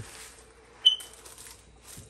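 A single short high-pitched beep, a fraction of a second long, about a second in, over quiet room tone.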